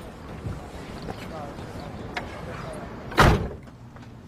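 A car door slams shut once, about three seconds in, the loudest sound here. Before it there is only a low steady background in the car.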